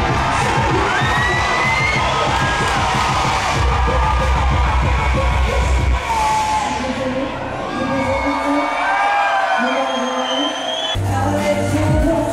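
Live band playing to a large crowd that is cheering and whooping over the music. The bass and drums drop out about two-thirds of the way through and come back in near the end.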